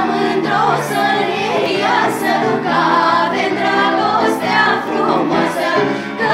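A small group of girls and young women singing together as a vocal ensemble, several voices at once.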